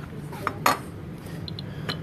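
Green uranium glass bowl knocking and clinking against a glass-topped display case. There are two sharp knocks about half a second in and another near the end.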